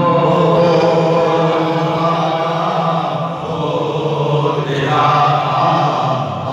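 A man chanting a devotional tarana in long held notes, one drawn-out phrase followed by a short dip and a new phrase near the end.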